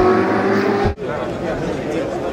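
A car engine sound effect from an intro logo accelerates with slowly rising pitch, then cuts off abruptly about a second in. Crowd chatter follows.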